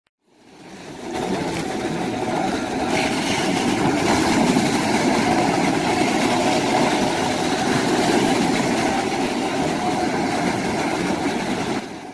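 Steady, rushing outdoor noise at a beach with waves breaking, fading in over the first second and holding evenly to the end.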